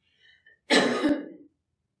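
A person clearing their throat with a single short, harsh cough about a second in.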